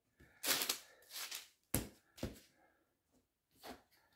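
A few soft rustles and knocks of handling, with two sharp clicks about half a second apart near the middle.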